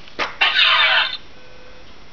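A click, then a short electronic power-up sound effect with a sweeping pitch lasting under a second, as a DeLorean time machine replica's prop systems switch on.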